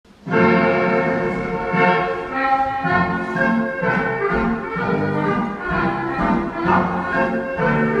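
Recorded strathspey music for a Scottish country dance, played by a dance band, starting suddenly just after the beginning and carrying on with sustained, full chords.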